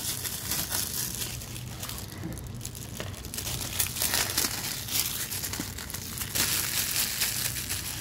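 Aged 1980s cellophane shrink wrap being torn and peeled off a CED videodisc caddy and crumpled by hand: a continual, irregular crinkling and crackling.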